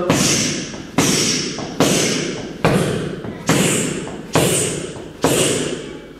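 Punches landing on a hand-held focus mitt: seven sharp smacks a little under a second apart, each trailing off in the room's echo.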